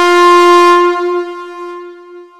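Locomotive air horn sounding one long blast on a single steady note, loudest at first and fading steadily away.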